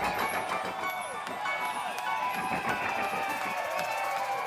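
A live rock band holding a soft, sustained passage while concert crowd voices shout and cheer over it.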